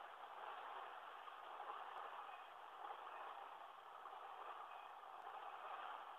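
Faint, steady rolling noise of an auto carrier freight train's cars passing over a grade crossing.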